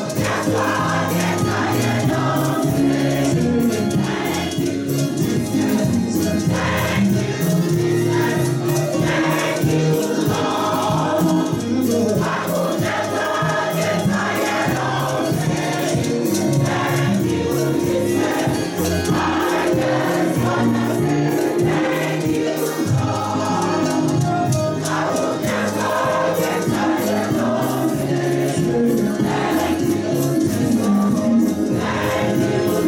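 A large choir of mixed voices singing a gospel praise song together, with rattling hand percussion keeping a steady beat.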